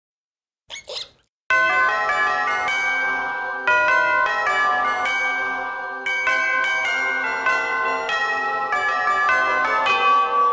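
A brief wavering sound just before a second in, then a melody of struck bell tones that ring on and overlap, each new strike coming in over the last, like a chiming clock.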